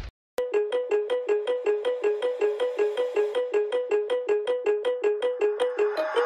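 Music: the previous song cuts off at the start, and after a brief silence a new track opens with a repeating two-note synth riff, about four short plucked notes a second, that sounds like a ringtone.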